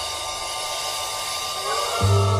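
A hissing noise swell in a 1970s organ music recording, growing brighter through a gap between musical phrases, with a short rising glide near the end that leads into the next chord.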